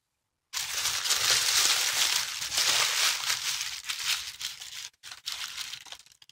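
Tissue paper crinkling and rustling as a wrapped package is opened by hand. The crinkling is continuous from about half a second in, then thins to a few short rustles near the end.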